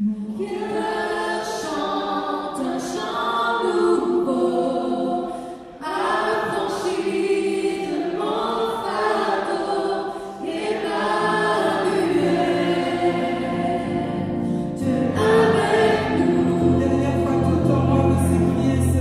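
Small church worship vocal group singing a gospel song in harmony, several voices in sustained phrases with brief pauses between them. Low bass notes join under the voices in the second half.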